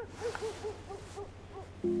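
A quick run of soft, short hooting notes, about five a second, over a low steady hum; near the end, sustained music chords come in.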